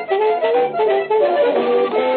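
Accordion-led instrumental music playing a moving melody: the interlude of the theme song between sung lines.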